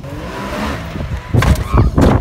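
A turbocharged Can-Am side-by-side's engine revving over rough wind noise, growing much louder about halfway through, with a person's voice calling out near the end.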